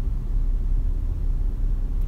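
Steady low rumble inside a car's cabin.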